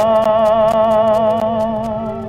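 A solo operatic tenor holding one long, soft note with vibrato in an opera aria, heard in an old, crackly broadcast recording.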